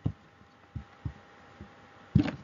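About four soft, low thumps, irregularly spaced under a second apart, over a faint steady hum.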